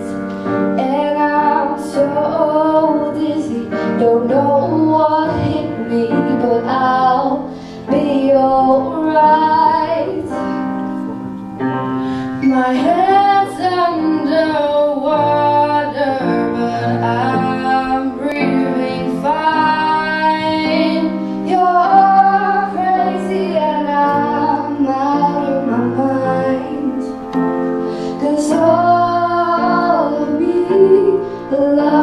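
Two teenage girls singing a song into microphones, accompanied by a grand piano.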